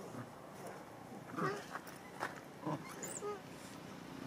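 Macaques giving a few short pitched cries, about a second and a half in and again near three seconds, with faint clicks in between.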